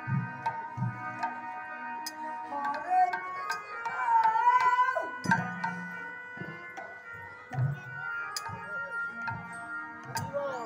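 Devotional kirtan music: a harmonium holding steady notes, with low strokes on a khol barrel drum and sharp clicks of percussion. A man's singing voice rises and falls, loudest around the middle.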